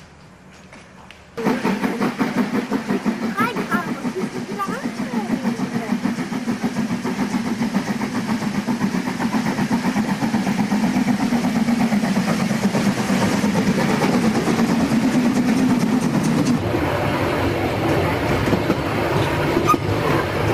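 Narrow-gauge steam locomotive working its train, loud and busy, starting suddenly about a second and a half in. Near the end the sound changes to the running noise of a carriage under way.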